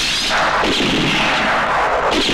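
Film pistol-shot sound effect with a long echoing rush of noise that swells several times, another shot coming in near the end.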